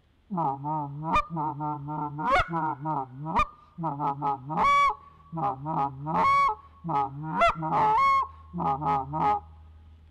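Tim Grounds short reed goose call blown as a laydown call (murmur): phrases of fast, low, chattering notes with single sharp, higher clucks thrown in about once a second, the loudest clucks in the second half. The clucks mixed into the murmur keep a finishing flock sounding excited and realistic rather than switching abruptly from excited calling to laydown.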